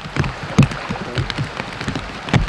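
Rain falling onto standing floodwater, a dense hiss of many small drop splashes with a few dull low thumps among them.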